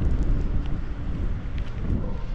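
Wind buffeting the microphone, a steady low rumble.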